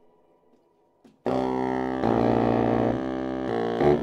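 A brief hush, then about a second in a reed quartet of saxophones and bass clarinet comes in together on a loud, deep held chord. The chord shifts twice and breaks off just before the next phrase.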